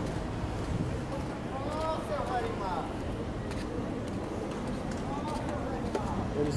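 Outdoor street ambience: a steady low rumble of traffic and open air, with people's voices talking twice, in the middle and again near the end.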